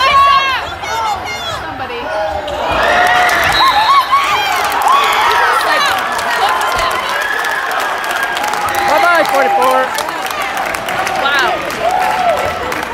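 Basketball being bounced and sneakers squeaking on a hardwood gym court, under crowd voices. The crowd grows louder about two to three seconds in, with clapping.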